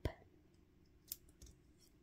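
A few small, faint clicks from paper bow pieces being handled and pressed into place, with one sharper click about a second in.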